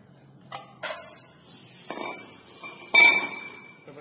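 Cast-iron weight plate being handled on a glass-topped digital bathroom scale: a few light knocks, then a loud clank about three seconds in, followed by a high metallic ring.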